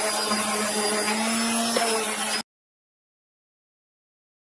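Random orbital sander with 120-grit paper running steadily on a wooden spoon, a level hum under the sanding noise. The sound cuts off abruptly to dead silence about two and a half seconds in.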